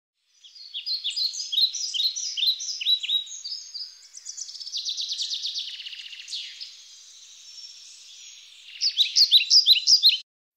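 Birds singing: quick series of short, down-slurred chirps, a fast trill in the middle and the chirping again near the end.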